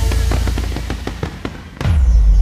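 Fireworks crackling in a quick run of sharp pops that grow fainter, under music. Near the end a sudden loud hit brings the music back in strongly.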